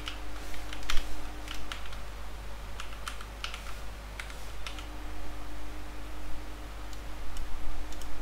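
Typing on a computer keyboard: irregular keystrokes in short quick runs with brief pauses between them.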